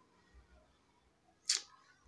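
Near silence, broken once about one and a half seconds in by a single short, sharp hiss.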